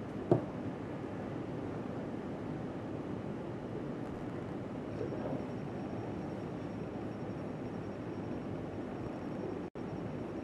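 Steady room tone and hiss of a conference room, with one sharp click about a third of a second in and a faint high whine in the second half; the sound drops out for an instant near the end.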